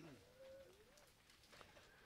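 Near silence, with one faint, low, wavering bird call lasting about a second.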